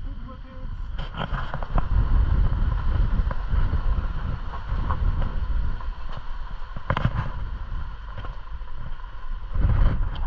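Off-road vehicle driving on a rough gravel road: a low, steady rumble of engine and tyres, with wind on the microphone and a few sharp knocks from bumps, the loudest about seven seconds in.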